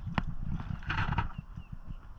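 Irregular knocks and bumps of someone shifting about on a small boat's deck while playing a fish, with a sharp click near the start and a short rustle about a second in.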